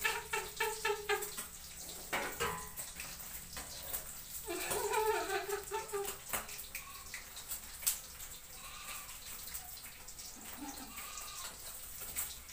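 Fish frying in hot oil in a pan over an open fire: a steady sizzle with sharp pops and spatters throughout. A woman laughs in short bursts at the start and again around five seconds in.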